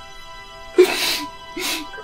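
Two sharp, breathy sobs from a man crying, about a second in and again just after, over soft music with long held tones.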